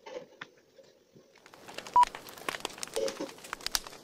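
Pencil scratching on paper in quick strokes, starting about a second and a half in, with a brief high tone about halfway through.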